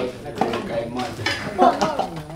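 Men's voices talking, with light knocks and clatter.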